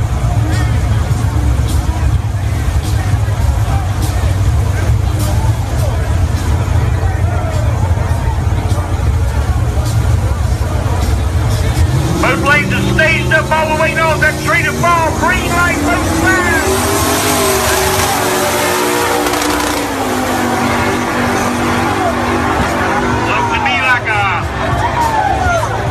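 Drag-racing cars' engines rumble heavily at the start line. About halfway, a crowd breaks into loud shouting and cheering, and an engine note rises and falls beneath it as the cars run.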